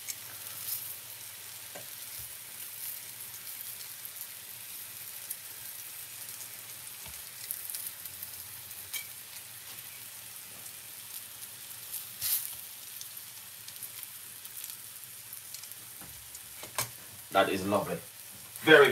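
Salmon pieces sizzling steadily as they fry in a little oil in a nonstick pan, with occasional sharp clicks of metal tongs against the pan as the pieces are turned, the loudest about twelve seconds in.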